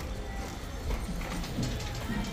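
Metal shopping cart rattling as it is pushed over a smooth store floor: a low rolling rumble with scattered clicks and clatter.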